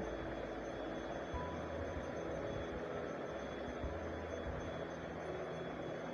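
Steady low background hiss and hum, with no distinct sound event.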